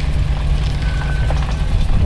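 Land Rover Discovery engine running steadily at low revs as the truck crawls down a rock ledge.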